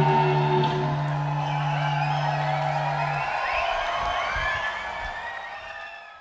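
A rock band's final chord held and ringing out, stopping about three seconds in. Audience cheering and whistling over it, fading down toward the end.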